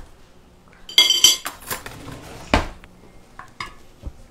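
Metal cutlery clinking and rattling as utensils are taken from a kitchen drawer, with more clinks, a louder knock about two and a half seconds in, and two small clinks of utensils and dishes near the end.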